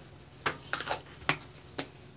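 A handful of short, light clicks and taps, about five in a second and a half, like small hard objects being handled.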